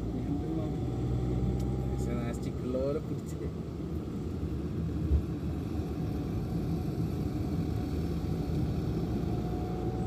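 Steady hum of a vehicle's engine with tyre and road noise while driving, heard from the moving vehicle.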